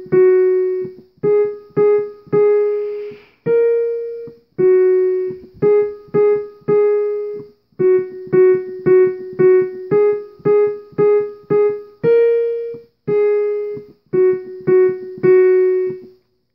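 Digital keyboard in a piano voice playing a simple one-note-at-a-time melody on the group of three black keys (F#, G#, A#), mostly quick runs of three repeated notes with some longer held notes.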